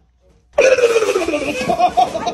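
A person's sudden loud startled yell, starting about half a second in and falling in pitch, breaking into short, rapid laughing bursts near the end.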